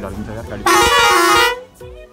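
A vehicle horn sounds one loud, steady two-tone blast lasting just under a second, starting about half a second in.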